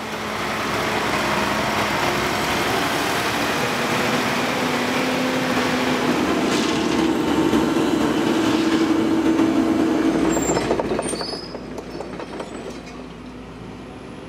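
Sumitomo tracked excavator travelling, its diesel engine running with the clatter and squeal of its steel tracks: a loud, steady sound with a held tone that steps higher midway. About ten seconds in it falls away to a much quieter background with a few faint high chirps.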